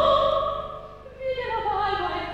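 Operatic singing: a voice holds a high note and fades out about a second in, then another voice comes in with a lower, moving sung phrase.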